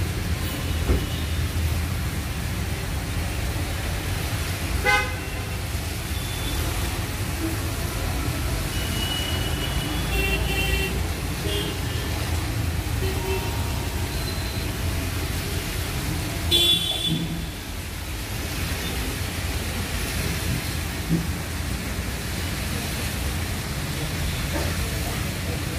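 Road traffic on a wet road: engines and tyres rumbling steadily, with a few short car and motorbike horn toots, the loudest about seventeen seconds in.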